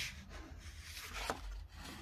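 A paper notebook page being turned over, its sheet sliding and rustling against the page beneath in a few soft swishes.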